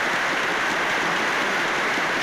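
Large hall audience applauding steadily, a dense even clatter of many hands.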